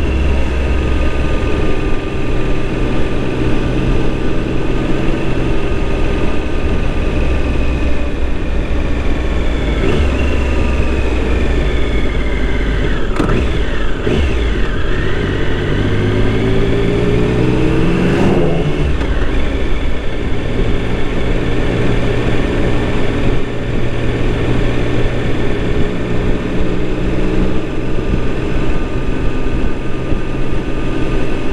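Onboard engine of a vehicle on the road, running steadily under heavy wind rush. The engine note drops as it slows a little past halfway, then climbs sharply as it accelerates, with a gear change just after that climb.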